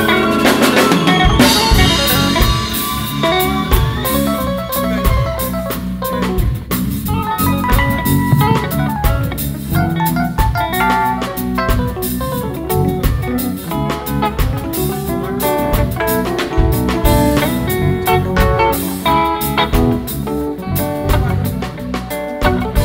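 Live band playing an instrumental passage: drum kit keeping a steady beat under electric bass, electric guitar and keyboard.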